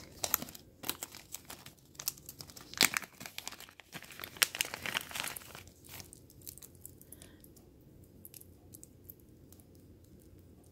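Small clear plastic bag crinkling and crackling in irregular bursts as it is handled and a charm bracelet is taken out. It dies down to faint handling noise about six seconds in.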